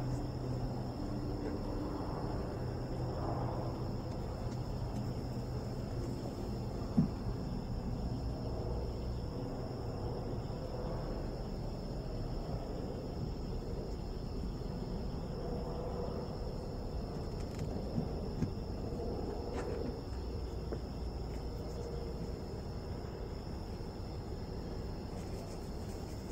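Honey bees from a freshly hived swarm buzzing steadily around the hive box, some of them agitated after a few were squished. A single knock comes about seven seconds in.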